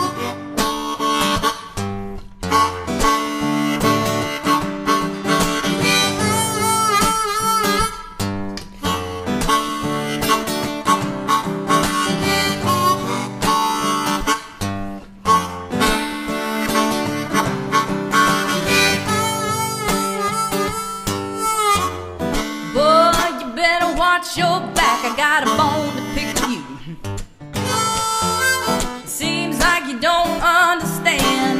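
Instrumental song intro played live: acoustic guitar with a harmonica carrying the melody in bending, wavering notes.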